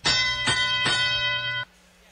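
Competition field's teleop-start signal: three bell strikes about half a second apart, their ringing tones cut off suddenly after about a second and a half. It marks the start of the driver-controlled period after autonomous.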